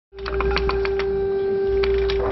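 Sharp clicks of a safe's combination dial being turned, several in the first second and then sparser, over a steady low rumble and a single held tone.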